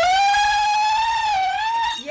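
A woman's zaghrouta, the high ululating cry of celebration, held as one long note for about two seconds and dipping slightly in pitch near the end.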